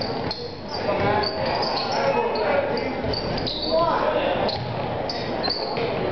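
Basketball game sounds echoing in a gym: sneakers squeaking on the hardwood court, the ball bouncing, and shouts from players, coaches and spectators, with one voice rising and falling about four seconds in.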